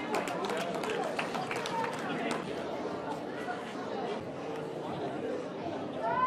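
Indistinct chatter of skaters and spectators in a large hall, with scattered clicks and clacks of roller-skate wheels and stops on the floor in the first couple of seconds.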